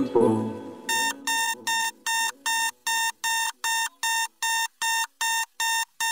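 The song's music fades out, then a rapid run of identical electronic alert beeps begins about a second in and repeats evenly, about two and a half a second. The beeps are the kind of alarm tone a computer gives.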